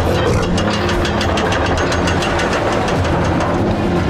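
A steady low mechanical rumble with rapid, even clicking, under held notes of action music: a cartoon chase soundtrack.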